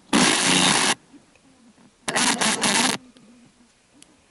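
Tivoli Audio PAL+ portable radio being tuned up the FM band: two short bursts of radio sound, each about a second long, with the set muted between frequency steps.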